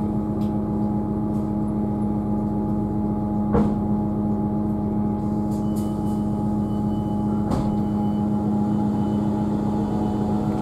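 Class 158 diesel multiple unit's underfloor diesel engine idling steadily while the train stands in the station, heard from inside the carriage, with two brief knocks about four seconds apart.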